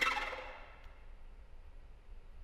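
Solo violin: a single sharp, accented stroke that rings and dies away within about half a second. A faint click follows a little under a second in, and then only the hall's quiet background remains.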